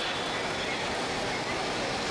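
Steady noise of a busy airport forecourt, with faint scattered voices of people nearby.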